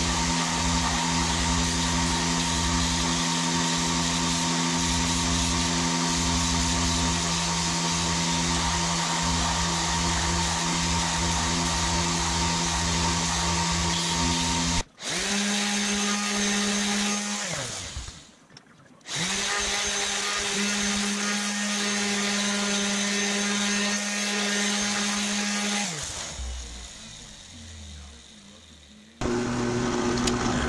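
Bench belt sander running steadily with a wooden mallet head held against the belt. About halfway through, a random orbital sander takes over: it runs, winds down, starts up again and winds down once more, leaving a quieter stretch near the end.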